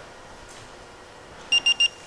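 Embroidery machine's touchscreen control panel giving three short, quick high-pitched beeps near the end, as the design finishes loading into the machine's memory. Before that, only faint room tone.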